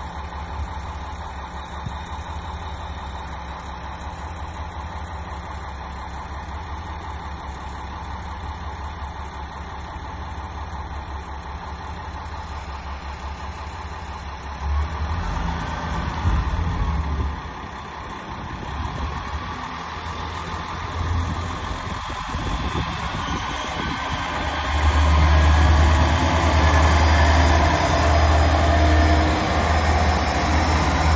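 Diesel engine of a JR KiHa 47 railcar idling steadily, then revving up about halfway through as the railcar pulls out, growing louder near the end as it comes by close.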